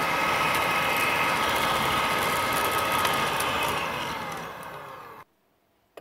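Electric hand mixer running at steady speed, its beaters whirring through a thick butter-and-condensed-milk batter with a steady whine. About four seconds in the motor winds down after being switched off, its whine falling in pitch and fading, and the sound cuts off suddenly a second later.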